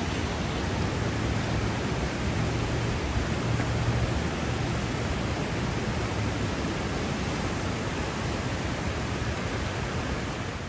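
Fast-flowing floodwater rushing along a flooded street, a steady rushing noise with no break.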